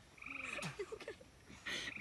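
A frog calling: a short, rapidly pulsed trill lasting about a quarter of a second, early on, with faint voices around it.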